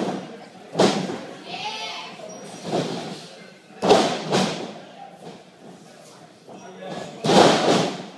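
Thuds of wrestlers hitting the mat and ropes of a wrestling ring: three loud impacts about three seconds apart, the last near the end the longest and loudest, with voices in between.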